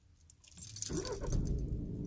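Audi A3 1.6 TDI four-cylinder diesel engine being started: quiet at first, then the starter cranks and the engine catches about a second in, settling into a steady idle.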